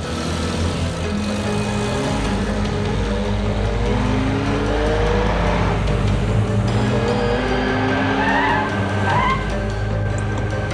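A car engine revving in several rising sweeps over a steady music score, with two short high tyre squeals near the end.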